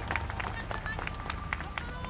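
Audience applause thinning out into scattered claps, with voices from the crowd.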